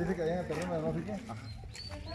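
Indistinct talk from people nearby, loudest in the first second and then fading.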